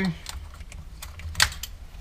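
Light scattered plastic clicks and one sharper clack about a second and a half in, as a Honda Civic steering wheel's wiring connectors are pulled through the hub and the wheel comes off the steering column.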